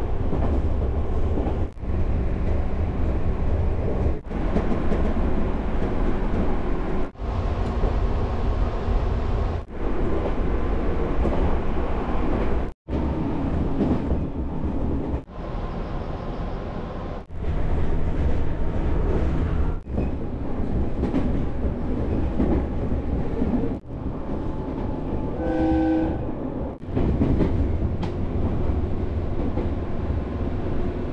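Running noise of an electric commuter train heard from inside the car: a steady low rumble of wheels on rail, broken by several abrupt cuts. A short horn note sounds near the end.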